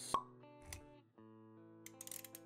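Intro jingle music: a sharp pop just after it starts, a softer low knock a little later, then steady held notes.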